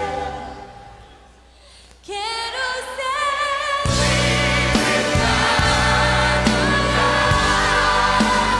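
Live gospel worship band with singing. The music dies down over the first two seconds. A sung voice with vibrato comes in about two seconds in, and the full band with drums and bass crashes back in just before four seconds.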